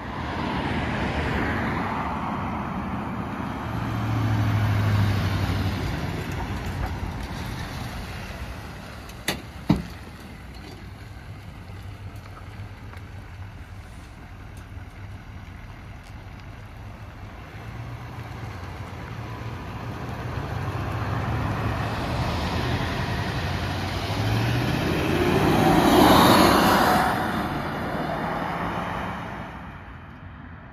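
Diesel engine of a 2023 GMC Sierra 3500 HD pickup towing a fifth-wheel trailer, running as the rig makes a tight turn and drives past. Near the end the engine note rises and the rig is loudest as it passes, then fades. There is a single sharp knock about ten seconds in.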